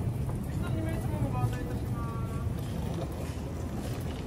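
City street ambience: a steady low rumble, with people's voices nearby in the first half.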